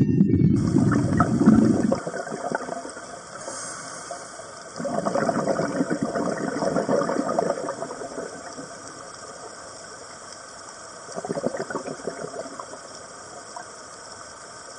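Water sound, as heard underwater or in a tank: a deep rumble for the first two seconds, then a steady hiss with two swells of gushing, gurgling water about five and eleven seconds in.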